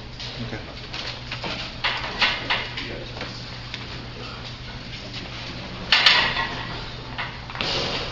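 Metal clanks and rattles of a loaded barbell in a steel power rack as a bench press is set up, with scattered light knocks and one loud sharp clank about six seconds in, as the bar comes off the hooks.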